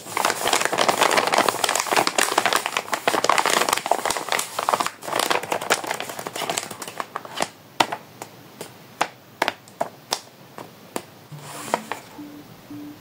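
Hands squeezing and rubbing a homemade paper blind bag, its paper crinkling and crackling. The crinkling is dense for about the first six seconds, then thins to scattered crackles.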